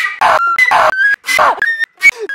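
Contemporary flute piece with electronics, cut up fast: short held flute notes alternate several times a second with breathy noise bursts and falling, cry-like glides, broken by brief silent gaps.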